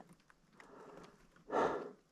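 A fallen motorcyclist pinned under his bike, breathing hard: a heavy exhale about one and a half seconds in, with faint rustling between breaths.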